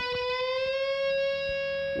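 Stratocaster-style electric guitar playing a single note at the 17th fret of the G string, picked and bent up a whole step. The pitch rises over about half a second, then the note is held and rings steadily.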